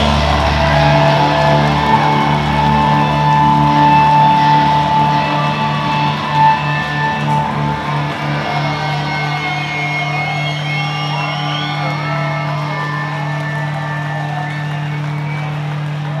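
Live rock band with electric guitars and bass letting a final chord ring on steadily, with one brief loud hit about six seconds in. A crowd cheers and whistles over the ringing chord.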